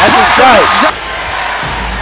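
A man's excited exclamation of "oh" over a televised basketball game's loud arena noise. About a second in the sound drops abruptly to a quieter, steady arena background.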